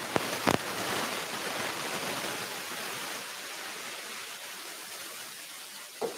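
A steady rushing hiss like static or white noise, with two sharp clicks in the first half second, easing slightly as it goes.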